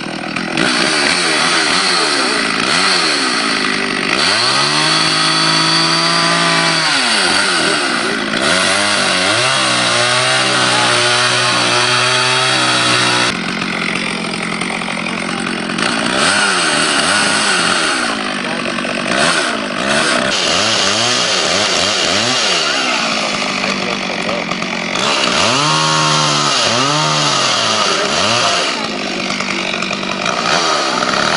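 Gas chainsaw cutting into a block of wood, the engine revving up and down over and over. It holds at full speed for a few seconds at a time, twice in the first half and once near the end, and drops back between cuts.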